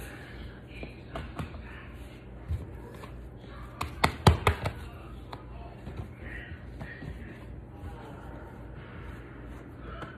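Hands stretching and folding sticky sourdough dough on a stone countertop: soft handling noises and light taps, with a cluster of sharper taps about four seconds in. A steady low hum runs underneath.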